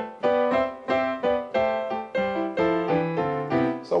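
Piano chords struck in a quick, even rhythm, about three strikes a second, each ringing briefly before the next. These are the diatonic seventh chords of C major being played through.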